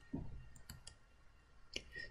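Quiet room tone broken by three faint, sharp clicks in quick succession a little over half a second in.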